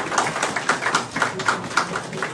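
Applause, with individual hand claps heard distinctly several times a second.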